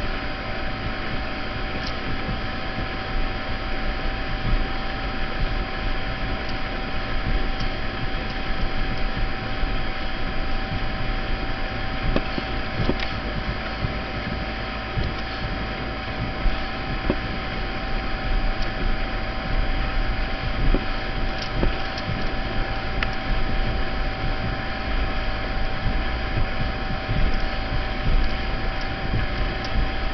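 Towing motorboat running steadily at speed, a constant engine drone mixed with wind buffeting the microphone and the rush of the wake.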